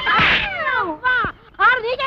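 Women shouting at each other in a heated quarrel, a loud, high-pitched cry falling in pitch near the start, a short pause, then shouting again near the end.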